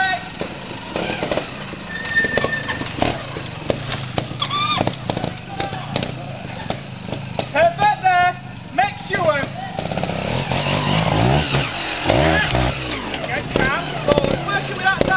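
Trials motorcycle engine running under the chatter of voices close by, revving up and down in short bursts in the last few seconds as the bike climbs.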